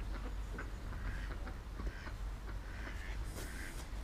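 Ducks quacking faintly now and then, over a low steady rumble.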